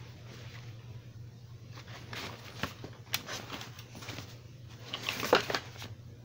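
Handling of a fabric car seat and its cover: scattered rustles and small knocks, loudest about five seconds in, over a steady low hum.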